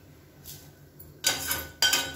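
Steel ladle scraping and knocking against a stainless-steel pressure cooker pan as roasted vermicelli is scooped out. There is a faint scrape, then two louder metallic clatters with a brief ring in the second half.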